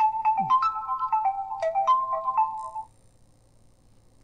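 A short electronic melody of quick single notes stepping up and down, about three seconds long, then cutting off.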